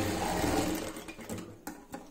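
Sewing machine running steadily as it stitches a seam through shirt fabric, slowing and stopping about a second in. A couple of sharp clicks follow near the end.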